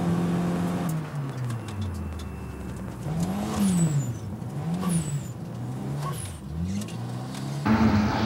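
Turbocharged Honda Odyssey minivan engine heard from inside the cabin on a circuit lap. The engine holds steady revs, drops off about a second in, then rises and falls three times. Near the end it jumps to a louder, higher steady note.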